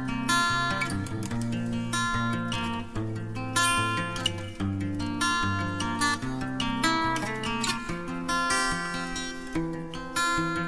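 Background music on strummed acoustic guitar, chords changing every second or so.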